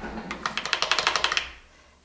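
A rapid run of light clicks, about a dozen a second, lasting roughly a second and fading out.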